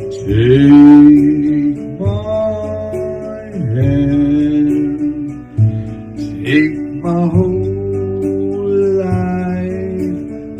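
A man singing karaoke into a handheld microphone over recorded backing music, holding long notes.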